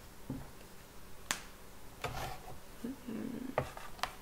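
Small handling sounds at a desk: one sharp click about a second in, then a few lighter clicks near the end.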